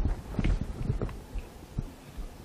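Several light, irregular knocks and taps, strongest in the first second and fading toward the end.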